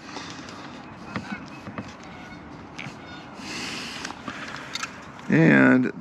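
Faint small clicks and rustling of a braided stainless hose nut being threaded by hand onto a plastic RV water inlet fitting, over low background noise, with a brief soft hiss about three and a half seconds in.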